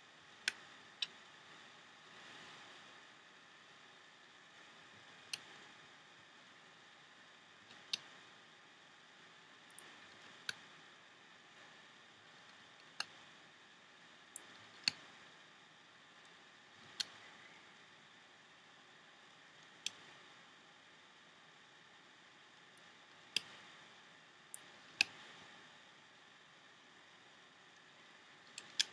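Rubber loom bands being stretched onto the plastic pegs of a Rainbow Loom, two at a time, giving sharp, irregular clicks and snaps every second or few over a faint hiss.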